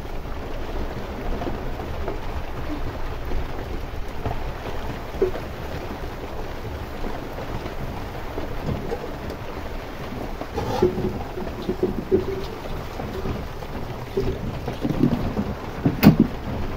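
Wood fire burning in an open clay hearth: a steady low rumble of the flames with scattered crackles, and a few louder knocks and pops near the end.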